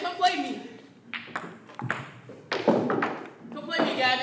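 Table tennis ball clicking off paddles and the table, several sharp ticks at uneven spacing, with people's voices.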